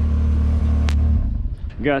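An engine idling with a steady low hum that stops abruptly a little past the middle, with a single sharp click just before it stops.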